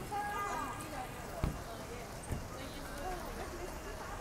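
Faint voices of other people talking in the background, over steady outdoor street ambience, with two short knocks a little under a second apart in the middle.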